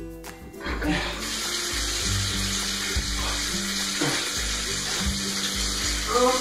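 Bathtub faucet turned on about a second in, water running steadily from the spout into the tub, with background music underneath.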